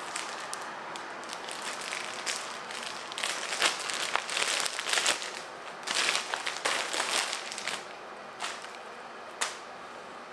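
Thin plastic garment bag crinkling and rustling as it is handled and opened to get a dress out, in irregular bursts that are busiest in the middle.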